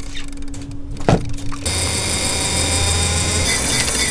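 A short splash about a second in as a live pilchard bait is thrown into the sea. Then, abruptly, a steady mechanical whir with a thin high whine takes over, over rushing water alongside the boat.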